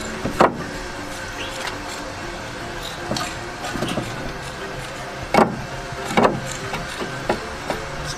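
Background music over a steady hum, with three sharp knocks: one soon after the start and two more past the middle.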